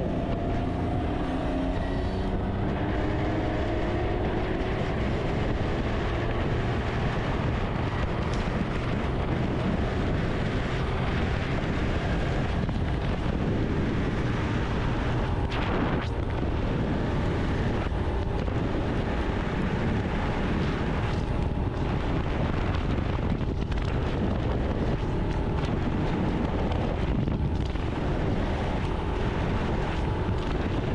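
Can-Am Ryker Rally 900's Rotax three-cylinder engine running at highway speed, with heavy wind noise on the microphone. In the first few seconds the engine's pitch rises as it picks up speed.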